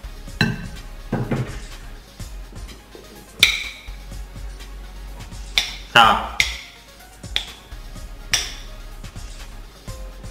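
A metal spoon clinking against a glass jar and a ceramic plate as spicy rujak sauce is spooned onto mango slices: a few sharp clinks with a short ring, the loudest about three and a half and eight and a half seconds in.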